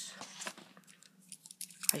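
Light handling noise: a few soft clicks and scrapes, a quiet stretch, then a sharper click just before the end.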